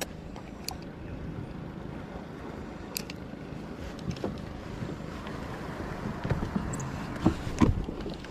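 Steady wind and water noise on a fishing kayak at sea, with a few light clicks and, near the end, several knocks and low thumps of the angler handling gear close to the microphone.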